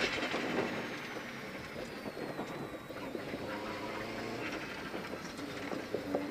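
Rally car's engine and road noise heard inside the cabin, easing back to a lower, steady run off the power through a 90-degree left turn, with a faint high whine falling in pitch over the first couple of seconds.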